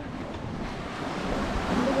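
Small waves washing up a sandy beach, the rush of water swelling near the end, with some wind on the microphone.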